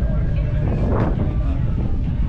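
People talking in the background over a steady low rumble, with one short sharp sound about a second in.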